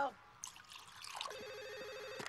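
Wine poured into a glass, then about a second and a half in a telephone starts ringing with a steady bell-like trill.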